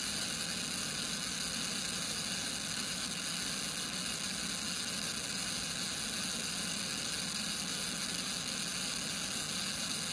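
Steady rush of wind and road noise picked up inside a police car travelling at high speed, an even hiss that holds at the same level throughout.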